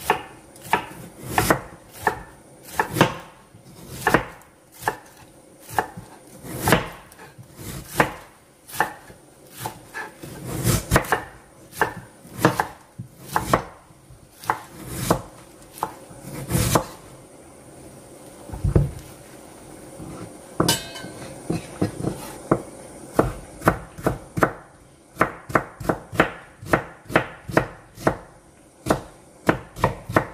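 Kitchen knife slicing napa cabbage on a wooden cutting board, each stroke ending in a crisp knock on the wood. The cuts come at a steady pace of one every half second or so, thin out for a few seconds past the middle, then speed up to about three a second near the end.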